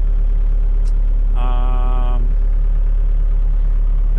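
Bobcat Toolcat 5600's diesel engine idling steadily, heard from inside the cab. A short held tone of under a second comes about one and a half seconds in.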